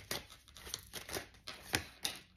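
Tarot cards being handled in the hands: a string of short flicks and snaps of card stock as cards are drawn from the deck, about a handful in two seconds, the sharpest one near the end.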